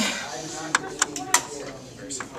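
Three sharp clicks of hard plastic parts knocking and snapping as a part is fitted back into a laser printer, with a voice speaking briefly at the start.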